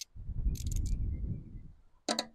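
A sharp click, then a few light metallic clinks of a socket and ratchet being handled about half a second to a second in, over a low rumbling noise.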